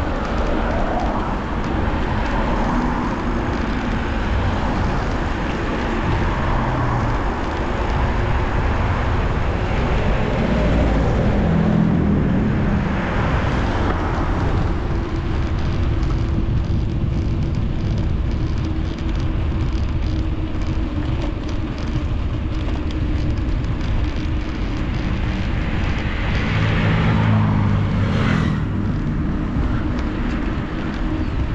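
Wind rushing over a handlebar-mounted action camera's microphone on a moving bicycle, a steady rumble. Motor vehicles pass twice, swelling and fading about a third of the way in and again near the end.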